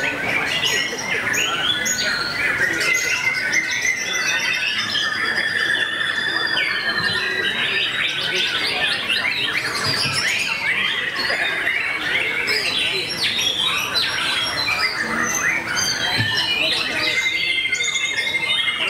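Dense, continuous birdsong from several caged songbirds at once, led by a white-rumped shama's varied song of rapid chirps, whistles and trills. A long steady trill runs from about four to seven seconds in, and another comes near the end.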